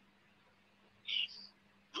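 A pause in a man's speech heard over a telephone line: faint steady line hum, with a short high hiss-like sound about a second in, and his voice coming back right at the end.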